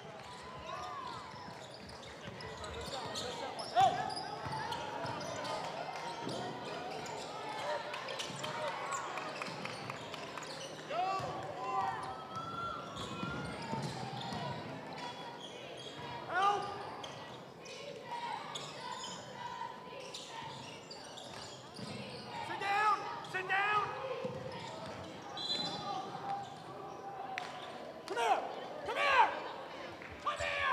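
Gym crowd talking and calling out during basketball play, with a basketball bouncing on the hardwood floor and some sharp knocks. The crowd voices flare up louder a few times, above all in the last third.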